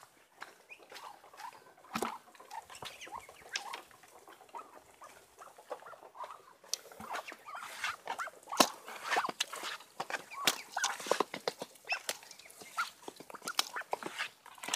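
Muscovy ducks feeding from a metal pan of wet mash: rapid, irregular clicks and pecks of their bills in the feed and against the pan. The pecking gets busier and louder about halfway through.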